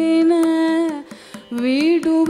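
Carnatic singing by a female voice, holding one long note over a low drone with mridangam strokes. The voice drops out about a second in, then slides up into the next phrase near the end.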